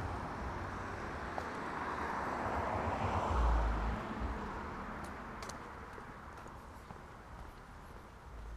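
A car driving past on the street, its tyre and engine noise swelling to a peak about three seconds in and then fading away.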